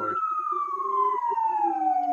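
Emergency vehicle siren wailing, one long slow fall in pitch that turns to rise again at the very end.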